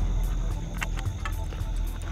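Night insects chirring steadily over a low rumble, with a few sharp clicks about a second in.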